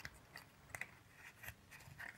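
Faint scrapes and small clicks of a small cardboard box being handled and opened, a few scattered ticks over a near-silent background.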